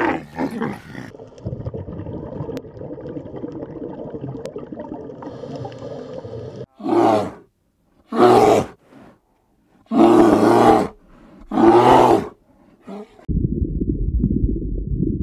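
A large animal roaring four times, each call loud and under a second long, with short gaps between them, after a stretch of lower, rougher rumbling.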